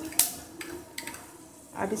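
Fenugreek seeds crackling in hot oil in a wok: one sharp pop, then a few fainter pops over a faint hiss.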